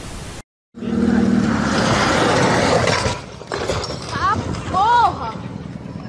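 A short burst of static hiss cuts to a moment of silence. Then comes a loud rushing noise lasting about two seconds, followed by a person's high-pitched exclamations rising and falling in pitch.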